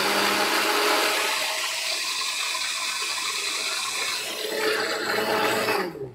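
Countertop blender running, churning soaked mung dal and water into a wet batter with a steady whirring and sloshing; it is switched off right at the end.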